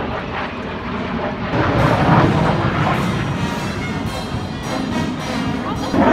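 Military jet flying overhead, its engine noise a broad roar that grows heavier about two seconds in, with music playing over it.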